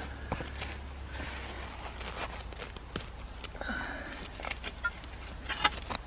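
A metal-bladed digging spade pushed into dry turf and soil and levered out, giving irregular crunches and scrapes of the blade in the earth.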